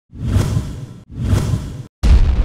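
Two whoosh sound effects from an animated intro, one after the other. Each swells quickly and is then cut off abruptly.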